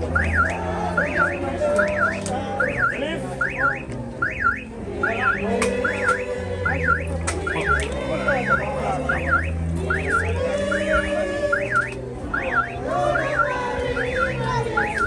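A car alarm sounding continuously, a rising-and-falling electronic whoop repeated about twice a second, over background music with a low bass line.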